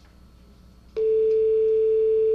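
A loud, steady electronic beep held at one mid pitch. It starts abruptly with a click about a second in.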